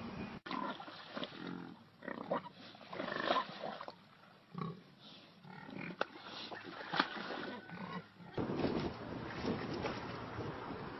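Pigs grunting in short, irregular calls.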